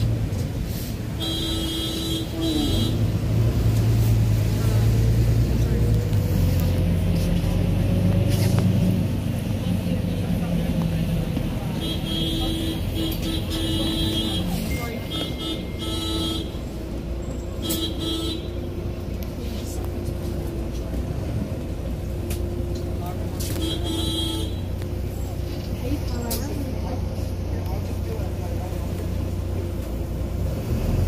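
Wright Gemini 2 double-decker bus running, heard from inside the lower deck: a steady low engine drone whose pitch rises for a few seconds as the bus picks up speed. Short spells of high beeping tones come and go several times, over faint passenger voices.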